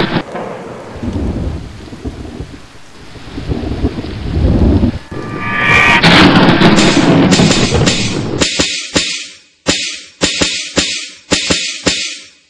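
Rumbling thunderstorm sound effect with rain-like hiss for about five seconds, swelling up about six seconds in. It then breaks into a fast stutter of chopped noise bursts, about three a second, leading into the song's beat.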